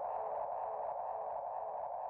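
A quiet, steady synthesizer drone, fading slightly: the soft tail of electronic music at a changeover between two drum and bass tracks.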